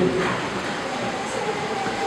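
Steady background hiss and room noise with a faint high steady tone, in a pause between spoken phrases.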